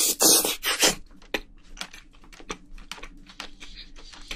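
Close-miked eating sounds: a loud slurping bite as a sauce-covered piece of braised seafood goes into the mouth in the first second, then a run of quick wet chewing clicks.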